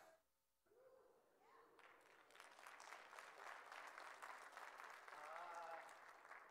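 Faint applause from a church congregation: a light scatter of hand claps that starts about two seconds in, after a moment of near silence.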